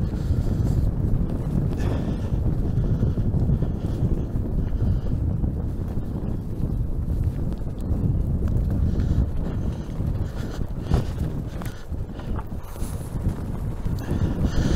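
Fat tires of an electric recumbent trike rolling over a leaf-covered dirt trail: a steady low rumble with irregular small knocks from roots and bumps, and wind on the microphone.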